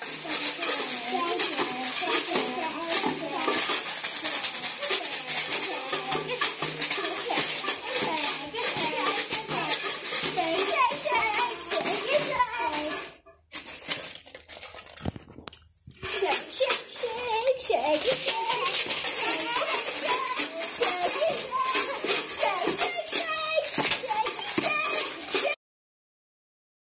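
Homemade tube shakers rattled hard and continuously, a dense hiss of small grains clicking, with a break of a couple of seconds about halfway through. Children's voices sound faintly under the rattling.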